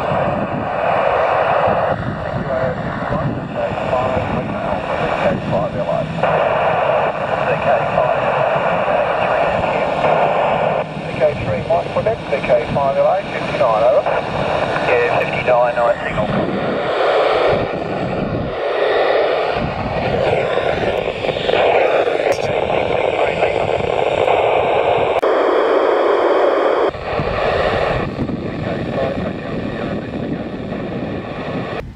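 AO91 amateur satellite FM downlink on two metres, heard through a Yaesu FT-817's speaker: a steady rushing hiss with weak, garbled voices of amateur stations breaking through the noise.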